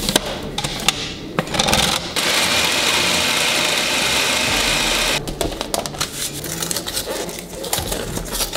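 Clicks and knocks of a plastic food-processor lid being fitted. Then the food processor runs for about three seconds, grinding raw chicken pieces into a paste.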